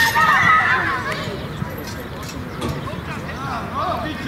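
High-pitched children's voices shouting and calling out during play, loudest in the first second, with more scattered shouts near the end.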